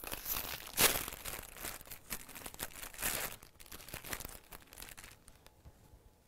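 Plastic wrapper of a crustless sandwich crinkling and tearing as it is opened and handled, in irregular crackling bursts that are loudest about a second in and again about three seconds in, then die away near the end.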